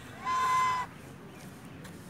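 White domestic goose giving a single loud honk, about half a second long and held at one steady pitch, starting a quarter of a second in.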